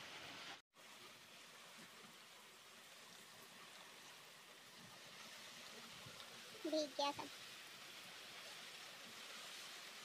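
Rain falling steadily, heard as a faint, even hiss. The sound drops out briefly about half a second in.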